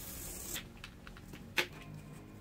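Snap-off utility knife blade slicing through a block of foam sponge, a soft hiss, then a single sharp click about one and a half seconds in.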